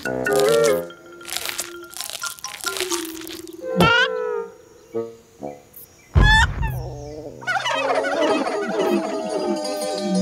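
Cartoon soundtrack of playful music mixed with comic sound effects. Steep rising whistle-like glides come at about four and six seconds, and a low thud at about six seconds. From about seven and a half seconds a wobbly, swirling musical effect plays, matching a character going dizzy.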